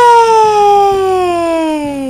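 A high voice holding one long drawn-out vowel, sliding steadily down in pitch.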